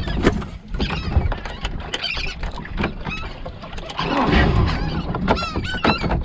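Knocks and clatter of handling gear on a small fiberglass boat, with wind buffeting the microphone. Near the end, gulls give a run of quick, repeated calls.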